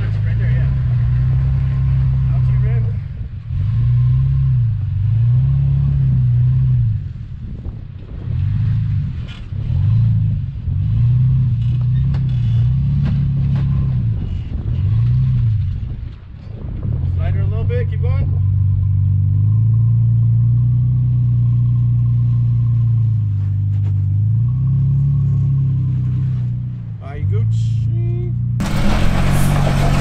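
Toyota Tacoma pickup engine revving in repeated swells as the truck crawls over boulders under throttle, with a longer steady pull partway through.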